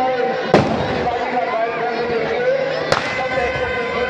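Firecrackers going off inside a burning Dussehra effigy: two sharp bangs about two and a half seconds apart, the first the louder, over the chatter of a crowd.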